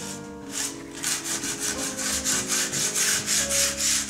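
Quick, even scraping strokes, about four or five a second, of a hand scraper along the rim of an unfired clay bowl, smoothing it down to a dusty finish. Soft piano music plays underneath.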